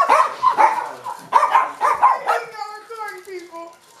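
Small dogs barking in short, repeated yaps over the first two seconds or so, with people's voices around them.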